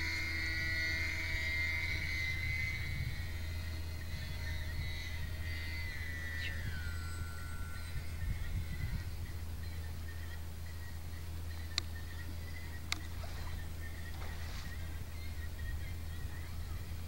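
Electric motor and propeller of a foam RC model seaplane flying overhead: a thin, steady high whine that drops in pitch about six seconds in as the motor slows for the landing approach, then fades away. Two sharp clicks come near the end.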